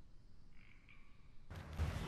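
Quiet outdoor background with one faint, short high-pitched call about half a second in. Near the end the background gets louder and fuller.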